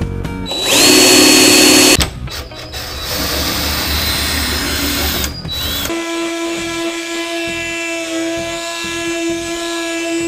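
Cordless drill running briefly at high speed about half a second in, a loud steady whine and the loudest sound. More tool noise follows, winding down near six seconds. Then an oscillating multi-tool buzzes steadily against the edge of a fiberglass wing flap.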